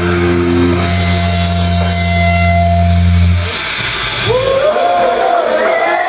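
Heavy metal band's last chord, bass and distorted guitar held and ringing, cut off about three and a half seconds in; then several shouting voices.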